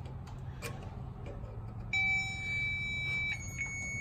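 A power probe circuit tester sounds a steady high electronic beep, starting about halfway in, as its tip applies ground to a headlight circuit. A low steady hum runs underneath.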